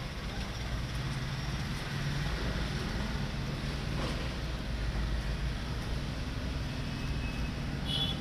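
Steady low rumble of a vehicle engine running, with outdoor background noise.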